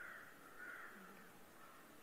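Near silence with faint, distant crows cawing a few times.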